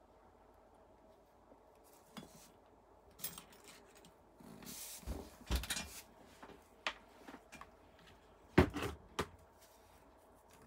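Air rifle being handled and laid down on a rubber work mat: a series of irregular knocks and clunks, the loudest late on.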